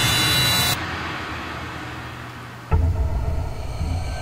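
Horror soundtrack music and effects: a loud hissing swell cuts off under a second in, a quieter fading stretch follows, then a sudden low booming hit nearly three seconds in opens into a low rumbling drone.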